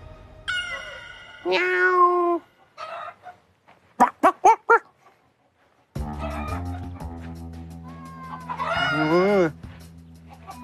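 A man's voice imitating a cat's meow, then a quick run of short clucks like a chicken, over background music.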